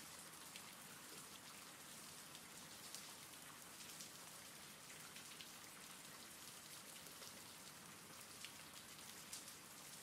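Faint, steady rain with light ticks of drops.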